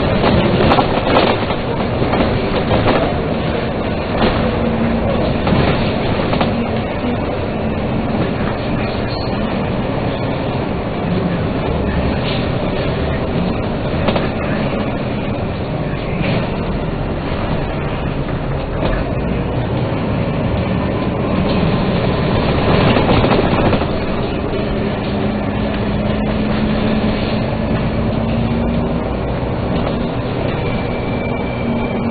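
A Dennis Trident three-axle double-decker bus heard from on board while driving: the diesel engine and drivetrain run under steady road noise with body rattles and clicks. A low whine rises slightly in pitch near the end.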